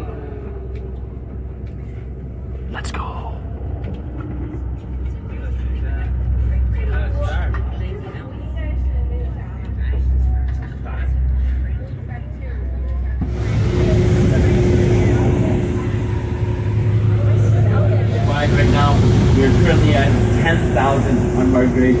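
Tour boat under way on a lake: a steady low engine rumble with faint, indistinct voices. About thirteen seconds in the sound changes abruptly to a louder rushing hiss with a steady hum, and voices rise near the end.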